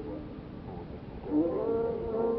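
Old recording of Carnatic vocal music: the melody drops to a brief, faint lull under hiss, then about one and a half seconds in a gliding phrase comes back in and settles on a held note.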